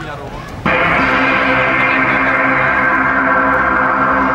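Keyboard synth pad playing a sustained chord through the stage PA. It starts suddenly about two-thirds of a second in and holds steady as the opening of the song.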